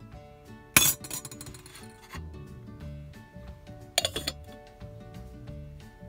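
Metal lid set onto a small EPI camping pot: a loud metal clink with a short rattle about a second in, and a second clink about four seconds in. Background music plays underneath.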